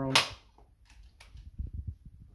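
A single sharp, loud click from the Rapid 106 electric stapler as it is handled and switched on, followed a second or so later by a small click and a few soft low knocks.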